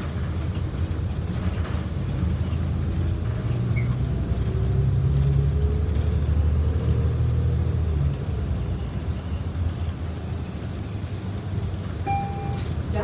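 City transit bus's engine and drivetrain running as the bus drives along, heard from inside the cabin at the front: a deep rumble that grows louder from about four seconds in, with a faint rising whine, then eases off about eight seconds in.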